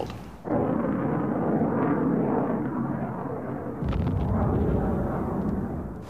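Muffled rumble of explosions, with a heavier, deeper surge of rumbling starting about four seconds in.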